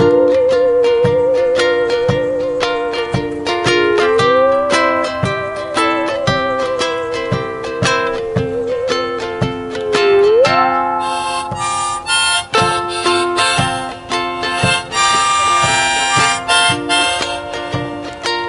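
Live acoustic band playing an instrumental break without singing: ukulele strumming over a steady hand-drum beat, with a harmonica lead playing long wavering notes that slide up between pitches, then fuller, brighter chords in the second half.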